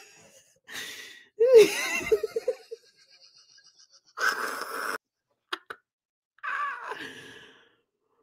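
A person laughing breathlessly in wheezing gasps: several short bursts separated by silent gaps. Two brief clicks come about halfway through.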